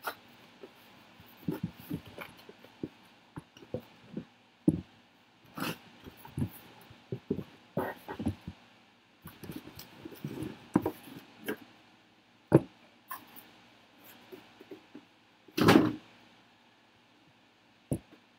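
Sealed cardboard trading-card hobby boxes being pulled out of a cardboard shipping case and set down on a table: a string of irregular knocks, taps and rustles, with one longer, louder scrape of cardboard near the end.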